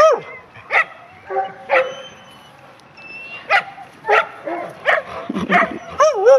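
Dogs barking in play: short, high barks and yips about once a second, with a faint high whine near the middle.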